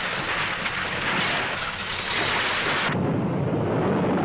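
Newsreel soundtrack effects of an advancing lava flow: a loud, steady hiss like escaping steam that cuts off about three seconds in, giving way to a lower, steady rumble.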